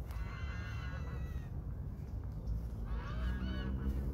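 Waterfowl on a lake calling in two bouts, one in the first second and a half and another near the end, over a steady low rumble.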